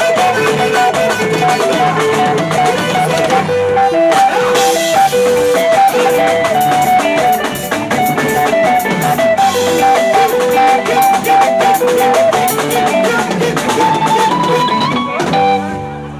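Live Congolese gospel band music: a lead guitar picks a fast, repeating high melody over a drum kit and percussion, and near the end the guitar line climbs higher.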